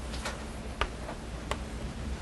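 Writing on a board: a few sharp, scattered taps and clicks, the clearest about a quarter second in, near one second and about one and a half seconds in.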